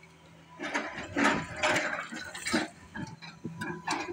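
Tracked excavator at work on a demolition: a low steady engine hum under an irregular clatter of knocks and rattles from about half a second in, as concrete rubble is broken and shifted.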